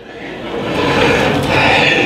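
Crowd cheering and applauding, swelling over the first second and holding.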